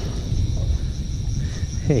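Uneven low rumble of wind buffeting a camera microphone out on open water.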